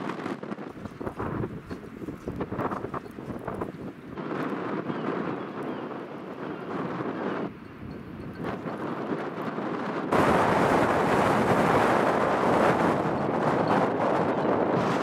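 Strong, gusting wind in a snowstorm buffeting the microphone, suddenly much louder about ten seconds in.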